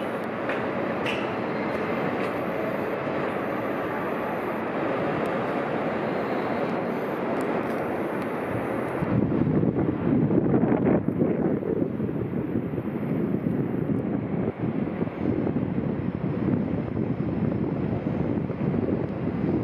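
Steady outdoor city background noise. From about nine seconds in, louder, uneven wind buffets the microphone.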